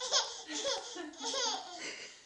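A baby laughing in about four short bursts, each falling in pitch.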